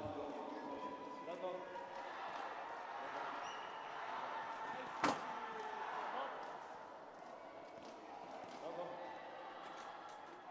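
Large sports hall ambience: faint, echoing voices and murmur from around the arena, with one sharp thump about five seconds in.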